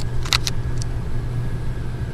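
Air handler blower fan running with a steady low hum on a call for cooling, with a few brief light clicks near the start.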